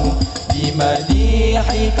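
Al-Banjari sholawat: a group of male voices singing a devotional Arabic melody together over hand-struck rebana frame drums, with deep bass-drum strokes underneath.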